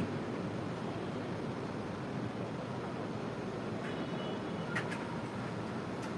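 Steady, even background noise (room tone, a steady hum of ambient noise) with no speech. A faint brief high tone and a small click come about four to five seconds in.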